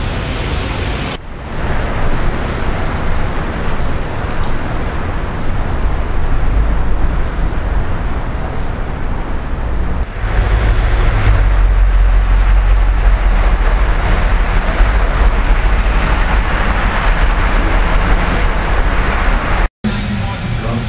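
City street traffic noise with a heavy low rumble, louder from about halfway through, that cuts out briefly near the end.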